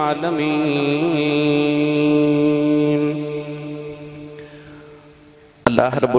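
A man's voice chanting an Islamic invocation, holding one long drawn-out note that slowly fades away over the last few seconds. Speech cuts in abruptly near the end.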